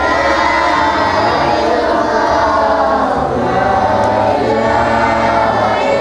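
A group of children chanting a prayer together in unison, many voices in one sustained sing-song line without a break.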